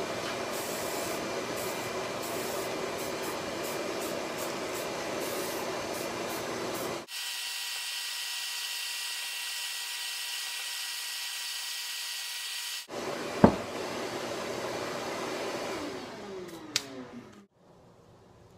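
Aerosol spray can of primer hissing in long steady bursts, the sound changing abruptly about seven and thirteen seconds in. A single sharp click comes shortly after the second change, and the hiss fades away near the end.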